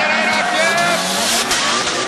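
Two drift cars sliding sideways in tandem, engines revving hard against a constant hiss of tyre noise.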